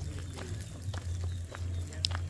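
Footsteps on a dirt road strewn with stones, about two steps a second, over a low steady rumble.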